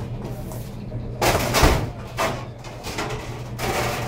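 Aluminium foil crinkling and a steel hotel pan scraping as the foil-wrapped pan is handled and lifted off a steel counter, in three noisy bursts, the loudest about a second and a half in. A steady low hum runs underneath.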